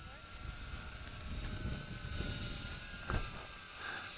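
Tarantula X6 quadcopter's small brushed motors and propellers in flight: a steady high whine over uneven low noise, with a short click about three seconds in.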